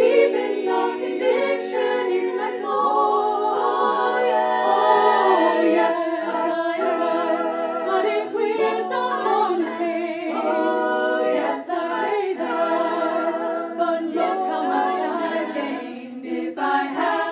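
Women's choir singing a cappella, several voice parts in harmony at once.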